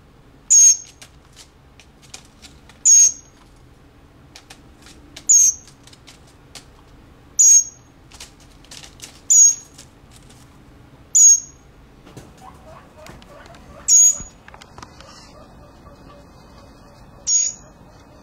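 Young northern mockingbird giving short, sharp, high-pitched begging calls, eight in all, one every two seconds or so.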